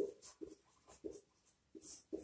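Marker pen writing on a whiteboard: a series of short, faint squeaking strokes of the felt tip as a word is written and underlined.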